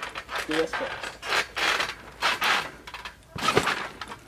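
Backyard trampoline being bounced on: the springs and mat give a series of creaks, clanks and jangles with each jump, coming irregularly about every half second, with a sharper clank about three and a half seconds in.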